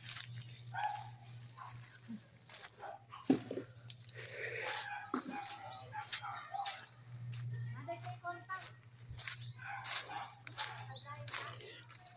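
Faint background voices and scattered knocks and rustles from a handheld phone being moved about, over a steady low hum.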